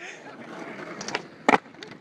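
Skateboard wheels rolling on rough asphalt, with a few light clicks about a second in and one sharp clack from the board about one and a half seconds in.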